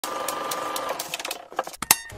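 Logo intro sound effect: a rapid mechanical clatter over a steady tone for about the first second, then a few scattered sharp clicks, the loudest hit just before the end.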